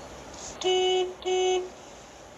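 Vehicle horn honking twice, two short blasts of about half a second each on one steady note, over a low traffic hum.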